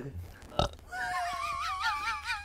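A single sharp thump about half a second in, then background music begins about a second in: a high, wavering melody with a strong vibrato.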